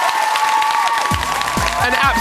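Studio audience cheering and applauding as a song ends on a held note. About a second in, a steady drum beat starts up under the applause.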